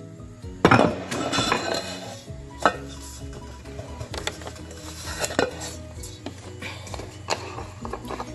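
Aluminium cake pan and kitchen items handled: a run of sharp knocks and clinks, the loudest just under a second in. Steady background music plays underneath.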